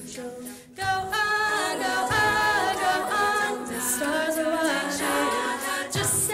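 Female a cappella group singing live: several voices holding layered chords that move in steps, with no instruments. The sound dips briefly at the start, and the full group comes back in a little under a second in.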